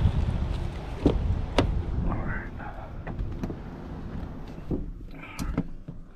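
Pickup truck door being opened and someone climbing into the cab: two sharp clicks of the handle and latch about a second in, then shuffling and rustling over a low rumble.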